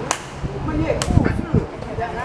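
A person's voice, with two sharp clicks about a second apart.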